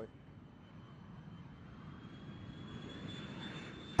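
Four-engine jet airliner on its takeoff run: a steady engine rumble with a faint high whine, slowly growing louder.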